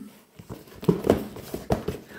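A few light knocks and taps from a cardboard shoebox being handled and let fall onto a table.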